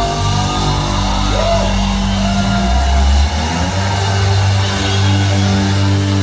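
Live band playing loud rock music, heard from on stage, with held bass notes that change a few times.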